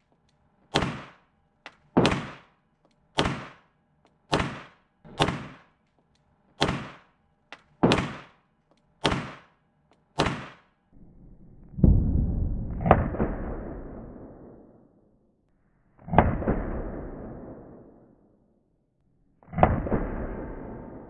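1911 pistol shots in an indoor range. About nine shots are fired at a steady pace of roughly one a second. Then come three louder shots spaced a few seconds apart, each with a long echoing tail.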